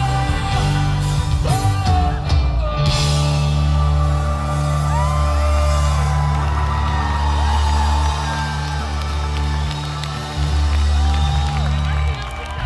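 Live pop-rock band playing through a PA: drums, bass guitar, guitars and keyboard. Strong sustained bass notes shift every few seconds under a bending melodic line.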